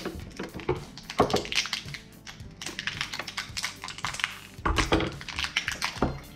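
Small hard plastic toy figures and lidded plastic jars being handled and set down on a wooden tabletop, a quick scatter of clicks and taps. Music plays faintly underneath.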